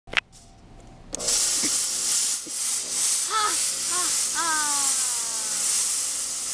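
Loud, steady hiss of smoke gushing from a smoke-producing device. It starts suddenly about a second in and keeps going, with a person's short voiced exclamations over it in the middle.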